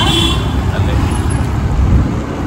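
Street traffic noise heard from a moving camera: a loud, uneven low rumble of vehicles and wind on the microphone, with a brief high tone at the very start.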